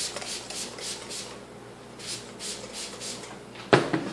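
Trigger spray bottle misting water onto a mannequin's hair to wet it, in quick repeated squirts about three or four a second with a short pause midway. A sharp knock near the end.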